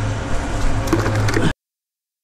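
Cement mixer running with a steady low hum while a stiff brush scrubs the inside of its turning drum to wash it out. The sound cuts off abruptly about a second and a half in.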